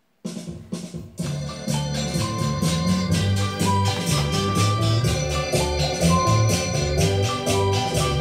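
Music with a steady beat played through the repaired Sony GR-X8 mini hi-fi system's speakers, starting just after a brief moment of silence, choppy for about a second, then playing on steadily.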